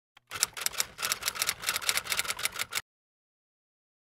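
Rapid typing clicks, about eight a second, a text-typing sound effect. They start after a single faint click and stop abruptly a little before three seconds in.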